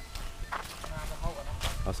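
Faint voices and light footsteps on a dirt road.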